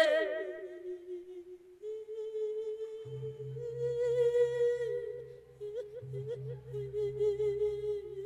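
A monk's voice holding a long, drawn-out sung note in the Isan lae chanting style, the pitch wavering in small ornaments. From about three seconds in, a soft low pulse repeats about three to four times a second beneath it.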